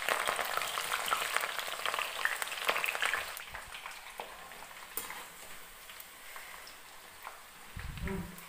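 Raw jackfruit pieces deep-frying in hot oil in a steel kadhai: a dense crackling sizzle with scattered pops, loudest for about the first three seconds and then settling quieter as they are stirred with a slotted spoon. A short low thud near the end.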